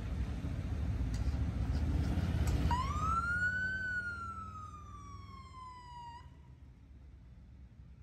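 A police siren gives one short wail: the pitch rises quickly, falls off slowly over about two seconds, then cuts off suddenly. Under it, and louder at first, is a low engine rumble from the slow-moving escort and float vehicles.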